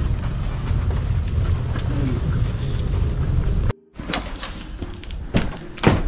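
Wheeled suitcase rolling over a carpeted corridor floor, a steady low rumble with light knocks. It cuts off abruptly a little under four seconds in, giving way to quieter room sound with a few sharp clicks.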